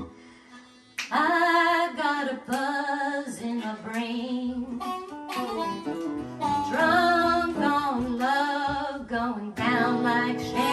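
A woman singing a song over instrumental accompaniment. The music drops out briefly at the start, and the singing comes back in about a second in.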